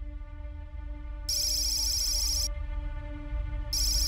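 Sci-fi computer sound effect: a rapid, high electronic chirping trill that starts about a second in, lasts just over a second, then returns near the end. It plays over a steady low ambient music drone.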